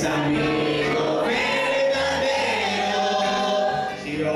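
A church congregation singing a worship song together in Spanish, many voices holding long notes. The singing is loud and steady, dipping briefly at the very end.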